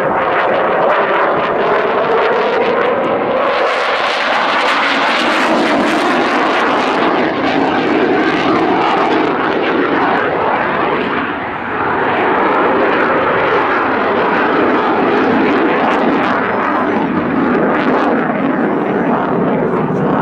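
Saab JAS 39C Gripen fighter's single Volvo RM12 turbofan jet engine, heard from the ground during a display, running loud and continuous. Its pitch sweeps slowly as the jet turns and climbs overhead, with a short dip in loudness about halfway through.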